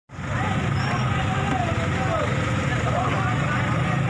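A vehicle engine running steadily under the overlapping voices of several people talking and calling out.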